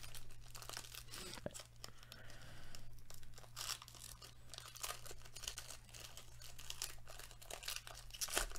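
A foil trading-card pack being torn open by hand, its wrapper crinkling and ripping in a faint, continuous run of crackles.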